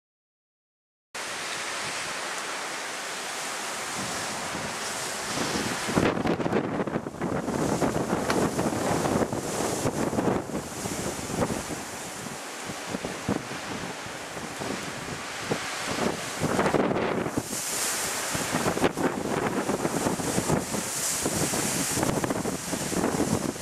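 Storm-force wind rushing through dense shrubs and trees, leaves thrashing, with gusts buffeting the microphone. It starts suddenly about a second in, fairly even at first, then turns gusty and uneven from about six seconds on.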